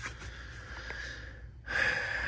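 A man's breath: a faint background haze, then about one and a half seconds in a loud, breathy rush of air lasting about a second.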